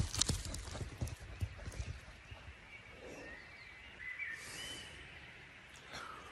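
A dog running off across forest-floor leaf litter and twigs: a quick run of soft thuds and crackles in the first two seconds that fades away, then quiet woodland with a faint high chirp about four seconds in.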